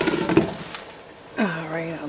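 A glass lid is set down on a frying pan with a short clatter of knocks while chicken, peppers and onions sizzle in the pan. A woman's voice begins near the end.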